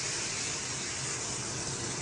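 Freshly seared beef strips and hot oil sizzling in a metal colander, a steady hiss that slowly fades as the oil drains off.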